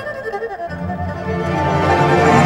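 Solo erhu playing a sliding, bending melodic phrase, joined about two-thirds of a second in by low sustained notes from the Chinese traditional orchestra, the music swelling louder toward the end.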